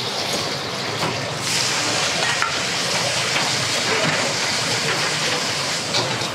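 Morning glory stir-frying in a wok over a gas burner: a steady sizzle with the burner's rush, growing louder about a second and a half in. The metal spatula knocks against the wok a few times.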